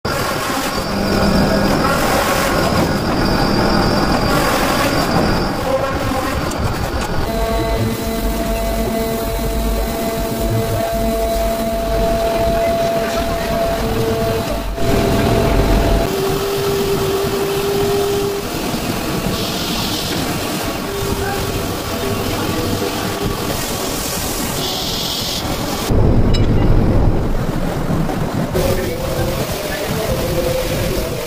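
Leather-processing machines running, a loud steady mechanical drone with sustained hum tones. It shifts in character about 7, 16 and 26 seconds in.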